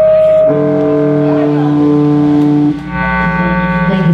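Live band music: long, held droning notes with many overtones that shift pitch about half a second in and again just before three seconds, with a brief dip in loudness near the change.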